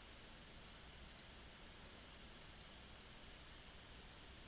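Faint computer mouse clicks: four quick double ticks spread over a few seconds, over a low steady room hiss.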